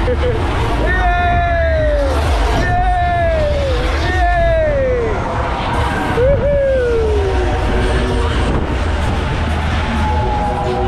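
Fairground ride riders whooping: four long shouts, each falling in pitch over about a second, over a steady low rumble.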